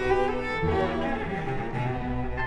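Solo cello playing a slow bowed melody, accompanied by the orchestra's string section.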